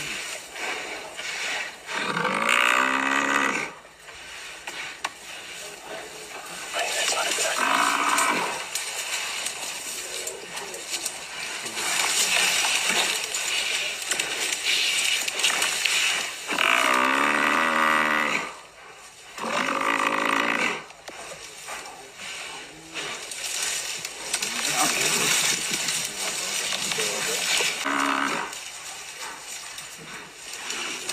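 Cape buffalo bellowing in distress under attack by lions: about four long, drawn-out calls a few seconds apart, the two loudest lasting over a second each.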